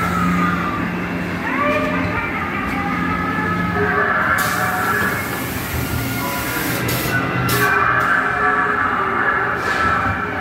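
Ghost train dark ride: the ride car running along its track under a steady low hum, with the ride's eerie sound effects of wailing, gliding tones, and short bursts of hiss several times.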